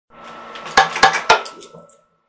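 Hard objects clattering: three sharp clinks about a quarter of a second apart over a low rattle, with a faint steady high tone underneath.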